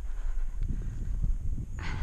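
Low rumble and soft knocks of horse and saddle movement on a rider's head-mounted camera, with a short breathy puff near the end.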